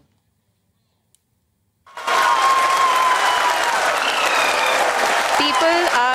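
Near silence for about two seconds, then a control room full of people applauding the successful moon landing. Near the end a man's voice starts speaking over the applause.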